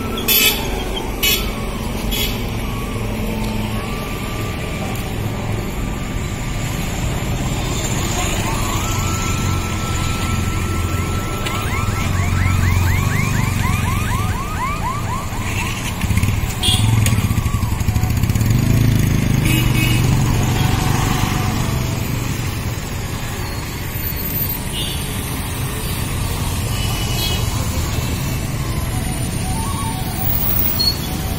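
Road traffic, with motorcycles and cars passing close by, under music playing in the background. About halfway through, a quick run of repeated rising electronic chirps sounds.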